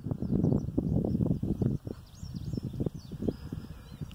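Wind buffeting the microphone in gusts, strongest in the first two seconds and easing after that, with faint high bird chirps in the middle.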